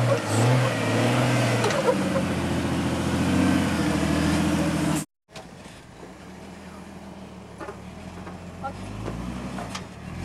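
A Jeep's engine running under load as it crawls up steep slickrock, its pitch shifting with the throttle. The sound cuts abruptly at about five seconds and comes back quieter, with the revs rising near the end.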